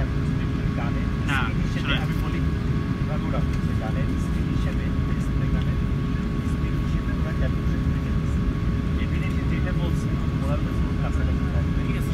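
Airbus A380 cabin noise while taxiing: a steady low rumble with a couple of steady tones, and faint voices in the background.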